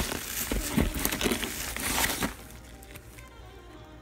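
Plastic meal-kit packaging rustling and crinkling as packets are handled in the box, stopping a little over halfway through. Faint background music is left after it.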